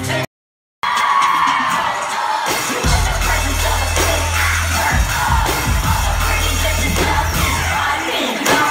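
Live pop concert recorded from the audience: after a brief dead gap near the start, the crowd cheers and screams, and heavy bass-driven music comes back in about three seconds in and carries on under the cheering.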